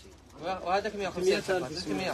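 Indistinct voices talking quietly after a brief lull at the start, softer than the main speaker's talk around it.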